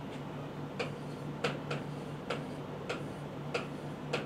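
Pen clicking and tapping against the writing board as a formula is written: about eight sharp, irregular taps, over a faint steady low hum.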